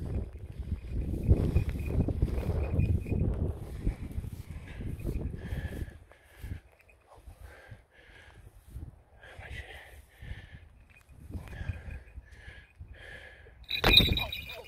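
Wind rumbling on the microphone, with rustling as someone walks through a grass field, over the first six seconds. After that it goes quieter, and short high chirp-like sounds repeat every half second or so.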